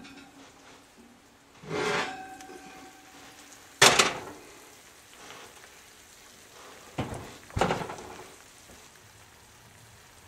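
A cast iron baking dish is pulled out of an oven with a metal scrape and brief ringing, then set down on an electric stovetop with a sharp clank about four seconds in, the loudest sound. Two knocks follow about seven seconds in as the oven door is shut.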